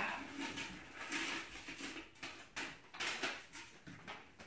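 Hands rummaging among folded paper slips in a stainless steel pot, then a paper slip being pulled out and unfolded: faint, irregular rustling and light scrapes.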